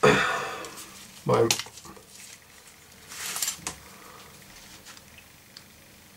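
Handling noise from a steel hunting knife (Hirschfänger): a sudden scraping rattle right at the start that fades over about a second, then light rustles in a quiet room. A short hesitant voice sound comes at about a second and a half in.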